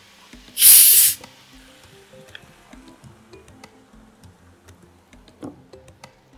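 Coca-Cola poured into a hot pan of fried vegetables, hitting the oil with a sharp, loud sizzling hiss that lasts about half a second, then dies down to a faint simmer.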